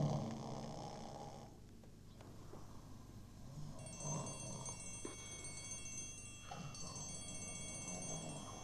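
Faint, sustained cluster of high chime-like tones entering about four seconds in, with a brief break near the seventh second, over quiet room tone; the tail of a timpani music cue fades out at the start.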